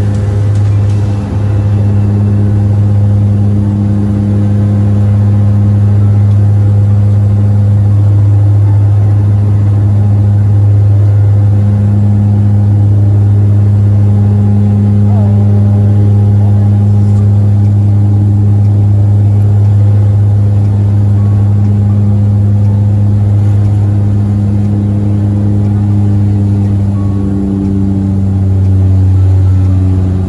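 Turboprop airliner's engine and propeller drone heard from inside the cabin while the plane climbs: a loud, steady low hum with a few higher overtones. The pitch shifts slightly near the end.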